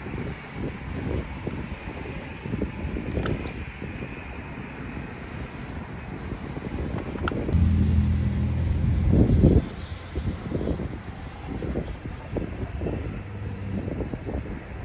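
Wind buffeting the microphone, with road traffic passing on the bridge. A louder low engine drone comes about seven and a half seconds in and cuts off sharply about two seconds later.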